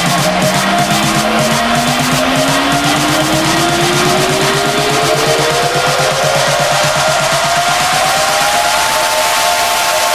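Electronic dance music build-up in a house mix: a synth sweep rises steadily in pitch for about nine seconds and levels off near the end, over a fast, evenly repeating drum beat.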